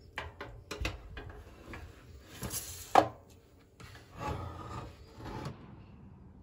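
A pan of buns being loaded into a small countertop toaster oven: scattered clicks and the pan and its foil scraping against the metal rack. There is a sharp knock about three seconds in, then more rubbing before the sound stops.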